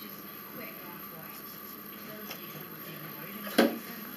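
A person climbing onto an exercise bike, with faint shuffling over a steady room hum and one sharp knock from the machine about three and a half seconds in.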